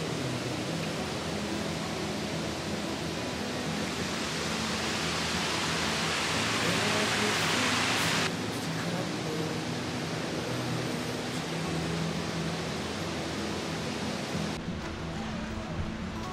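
Rushing mountain river, a steady hiss of flowing water that swells for a few seconds and drops off abruptly about eight seconds in.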